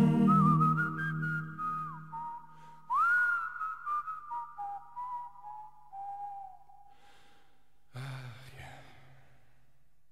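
Closing bars of an acoustic folk song: a whistled melody, sliding between notes, over a fading guitar chord, dying away by about seven seconds in. A brief breathy sound comes near the end.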